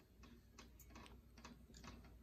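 Faint, quick ticks, about four a second, from the hi-hat of a rap beat leaking out of earbuds.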